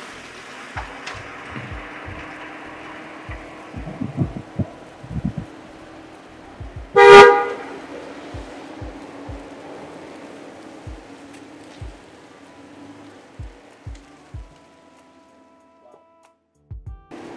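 A car horn sounds once, short and loud, about seven seconds in, over quiet background music.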